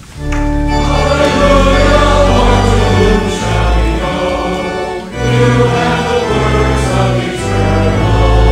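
A congregation singing together with organ accompaniment. Sustained organ bass notes run under the voices, with a brief break between phrases about five seconds in.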